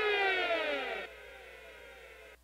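Siren-like tone sliding steadily down in pitch, cut off about a second in and leaving a faint fading echo.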